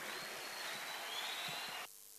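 Faint steady hiss of room noise with a thin, high faint tone, cutting off suddenly near the end.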